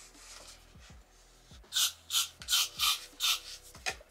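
A got2b hairspray aerosol can sprayed in five short hissing bursts in quick succession, starting a little under two seconds in.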